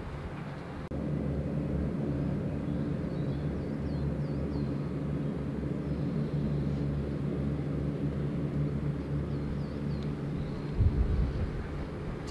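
Steady low drone of a distant engine, louder from about a second in, with a few faint bird chirps and a short low thump near the end.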